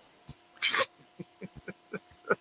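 A man's stifled laughter: one sharp breathy exhale, then a run of short soft chuckles.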